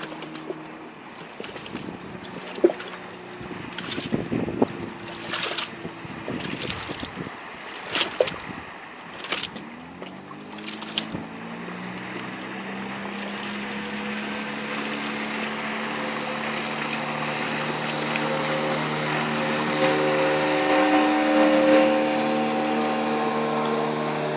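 Small boat's outboard motor running on the water, faint at first, then rising in pitch about ten seconds in and holding steady while it grows louder as the boat comes closer. A few sharp knocks break the first half.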